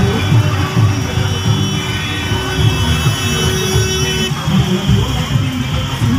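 Loud music with a heavy, pulsing low beat. A steady held tone runs through it and cuts off suddenly about four seconds in.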